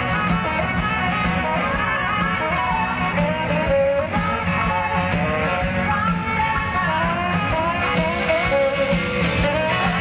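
A live rock band playing, with a saxophone carrying a wavering melody over guitar and a steady beat.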